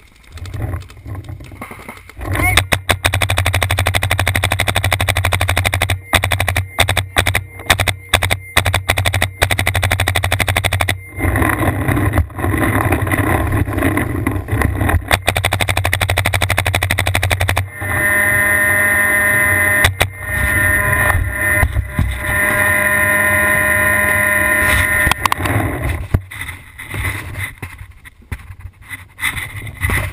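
Paintball marker firing in rapid strings of shots at close range, starting a couple of seconds in. Later a steady, held tone in several pitches sounds for about seven seconds.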